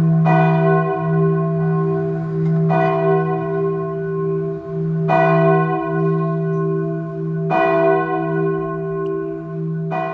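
A church bell tolling, struck four times about two and a half seconds apart, each stroke ringing on into the next.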